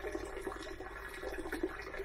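Thick, syrupy fermented plant juice trickling quietly from a stainless steel bowl into a glass mason jar, with a few faint light taps.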